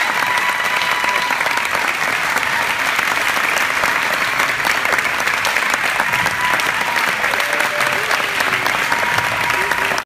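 Audience applauding steadily, a dense patter of many hands clapping, with voices from the crowd mixed in.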